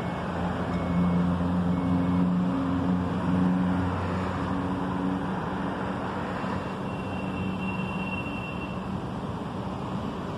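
Street traffic: a motor vehicle's engine running close by, loudest for the first few seconds and then fading, over a steady haze of road noise.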